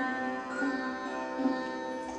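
Sarod being plucked solo, a couple of notes sounding about half a second and a second and a half in and ringing on.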